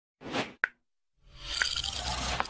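Intro-animation sound effects: a short rush of noise and a sharp pop, then a brief silence and a rising swell of noise with a click in it.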